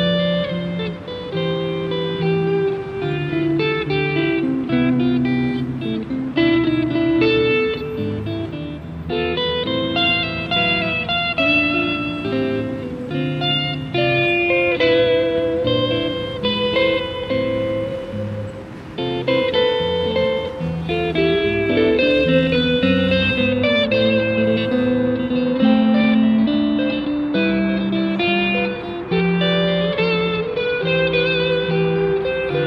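Electric guitar played live: a solo instrumental passage of picked melody notes over lower bass notes, with a brief lull a little past the middle.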